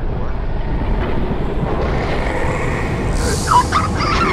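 A steady low rumble of jet thrusters on a flying animated character, with a short high wavering sound about three and a half seconds in.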